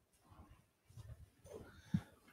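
Faint room tone with a few soft, brief vocal sounds from a man, a short pitched one near the end.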